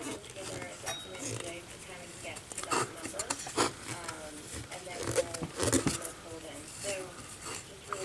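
Small metallic clicks and light scrapes from a screwdriver backing a screw out of a radio's metal dial-glass frame, with a few sharper clicks scattered through. A faint voice carries on underneath.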